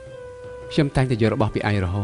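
A held steady note, then, under a second in, a loud high voice that rises and falls in pitch for about a second.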